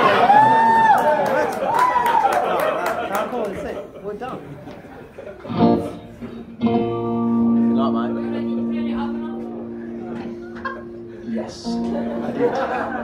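Audience cheering and whooping with scattered clapping, dying down after about four seconds. About six and a half seconds in, a guitar chord is strummed and left to ring, with a few single notes picked over it as the guitar is checked before the next song.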